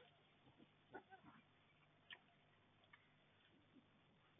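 Near silence, with a few faint short squeaks and ticks from young wild boar rooting in the soil, the clearest about a second in and just after two seconds.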